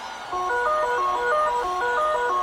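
Electronic dance music from a DJ mix: a bright synth riff of quick, short notes enters about a third of a second in, clearly louder than the hushed passage before it.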